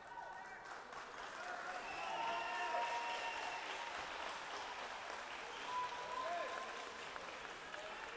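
Scattered applause and calling voices from a small crowd in a school gymnasium, swelling about two seconds in.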